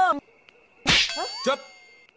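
A sharp metallic clang about a second in, ringing on and fading away over about a second, with short rising pitched sounds over the ringing.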